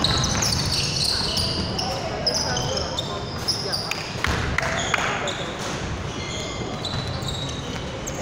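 Basketball game on a hardwood court: sneakers squeaking in many short, high chirps while a basketball bounces, with a few sharp thuds about halfway through and voices in the background.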